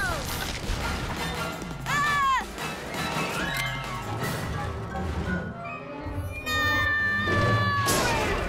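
Animated-cartoon soundtrack: action background music mixed with sound effects. A short exclamation rises and falls about two seconds in, and a long held cry or tone runs near the end.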